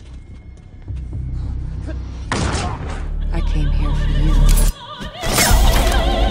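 Action-film soundtrack: a low rumbling score with a sharp hit a little past two seconds. The sound swells, drops out briefly near five seconds, then comes back as loud music punctuated by impacts.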